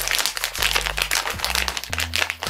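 Snack packet crinkling continuously as it is opened by hand, with quiet background music underneath.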